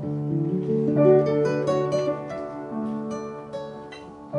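Acoustic guitar picking a slow instrumental phrase of a French chanson, the notes dying away near the end.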